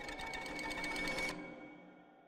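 Trailer sound design: a fast, even rattle of clicks, about twenty a second, over held tones. The rattle cuts off suddenly about a second and a quarter in, leaving a fading drone.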